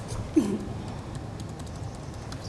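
Scattered light clicks of a laptop keyboard being typed on, over room tone, with a short falling vocal sound about half a second in.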